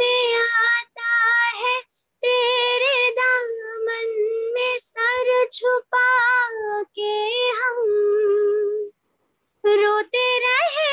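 A woman singing a Hindi film song unaccompanied, in long held notes with small wavering ornaments. The phrases break off abruptly into dead silence several times.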